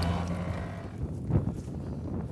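Pickup truck's engine and road noise, a steady low drone inside the cab, giving way about a second in to outdoor wind on the microphone with a brief thump.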